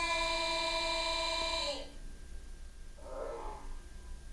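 A steady held pitched tone with several overtones, starting suddenly and lasting almost two seconds, followed about three seconds in by a brief fainter sound, from audio played back through a computer audio-stretching app.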